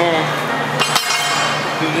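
A steel barbell clinks against metal as it is picked up, a sharp clink about a second in that rings on briefly.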